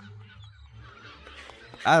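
Faint calls of a flock of birds in an anime's soundtrack, over a low steady hum.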